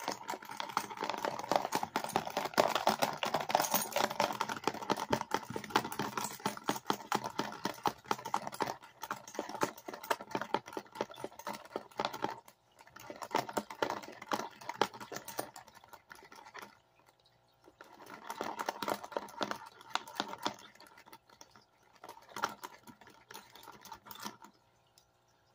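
Water sloshing and swirling in a plastic gold pan, with rapid small clicks, as paydirt is panned. A long continuous spell of panning gives way to shorter bursts with brief pauses between them.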